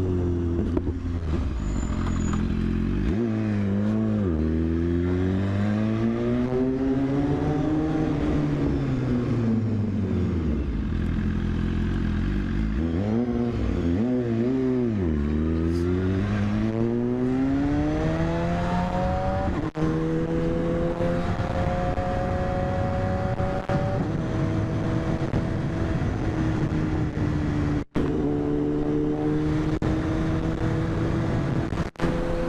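Sport motorcycle engine heard from the rider's seat, its pitch repeatedly dropping and climbing as the throttle is closed and opened, with a few quick rises and falls about halfway through. Later it runs steadier with the pitch slowly climbing under acceleration, broken by two sudden cuts.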